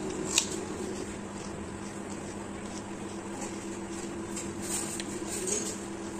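Eating by hand from a plate of rice and curry: mouth sounds of chewing, a sharp click about half a second in, and a run of small clicks and squishes near the end as fingers mix rice on the plate, over a steady low hum.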